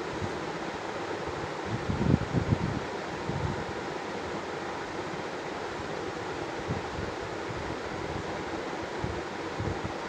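Steady background hiss of room noise, with a few faint low knocks about two seconds in.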